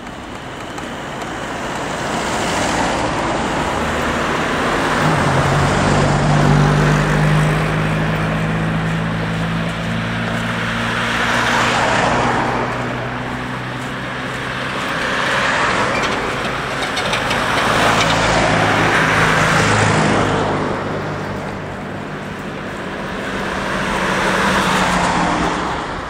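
Road traffic: cars passing close by one after another, about five passes, each a swell of tyre and engine noise that rises and fades over a few seconds. A lower, steadier engine hum runs under the passes in the first half.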